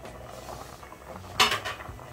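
Aluminium pot lid clanking once as it is set down, about one and a half seconds in, with a short ring, over the steady bubbling of sweet potatoes boiling in water in the uncovered pot.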